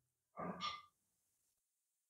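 Near silence, broken about half a second in by one short, faint breath from a man close to the microphone.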